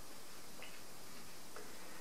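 Quiet room tone with a steady hiss and two faint ticks about a second apart.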